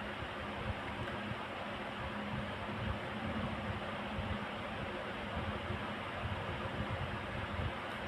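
Steady low hiss of room noise with a faint hum, unchanging throughout, with no distinct events.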